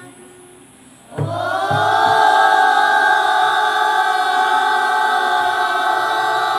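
A group of children singing together in unison: after a short pause they come in about a second in on one long, steady held note.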